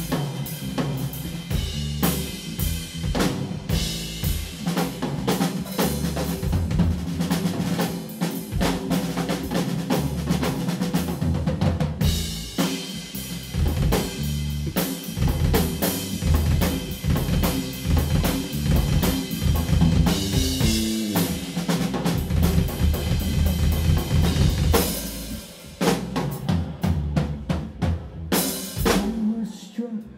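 Drum kit solo in a live rock band: rapid snare and bass-drum strokes with cymbals, played without a break.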